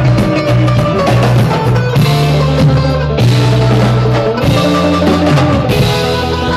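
A live bluegrass-style band playing an instrumental passage: banjo picking over an electric bass line of held low notes that change every second or so, with drums keeping the beat.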